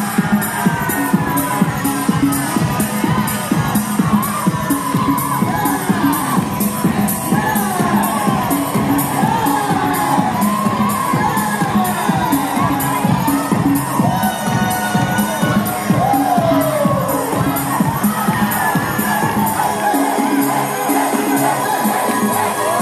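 House music with a steady beat playing loudly, with a crowd of dancers cheering and whooping over it. Near the end the deep bass drops out of the music.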